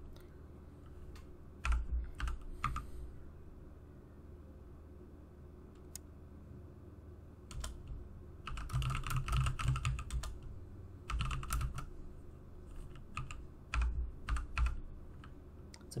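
Typing on a computer keyboard in irregular bursts of keystrokes with pauses between them. There are a few scattered keys about two seconds in, then longer runs of keystrokes from about eight seconds in.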